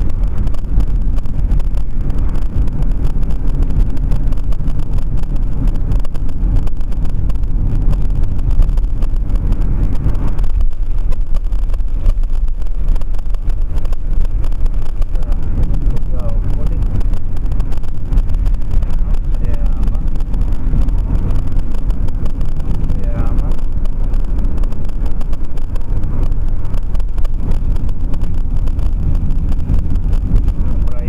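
Car driving in traffic, heard from a dashcam inside the cabin: a loud, steady low rumble of road and engine noise with some wind noise.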